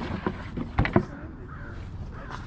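Cardboard trading-card boxes handled on a table, with a knock at the start and two short knocks close together about a second in as a box lid is set down.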